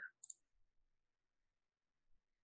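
A single faint computer mouse click about a quarter second in, as the app's Plot button is clicked.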